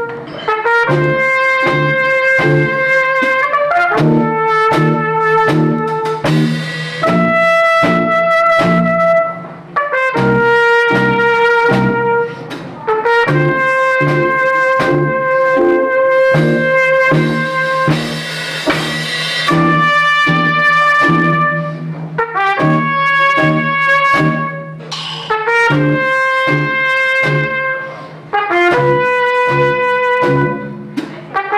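Trumpet playing a jazz melody of long held notes, over a band with a drum kit keeping a steady beat.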